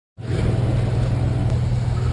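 An engine running steadily with a low hum and a fast, even pulse.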